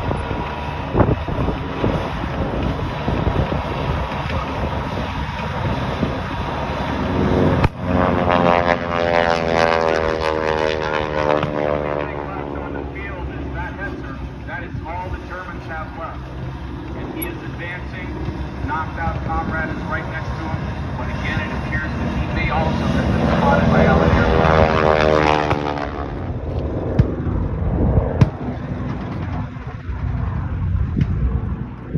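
Propeller aircraft making low passes over the field: its engine note sweeps down in pitch as it goes by about 8 s in, and comes back louder about 22 s in before cutting off sharply. A steady low engine rumble runs underneath, with a single sharp crack near the first pass.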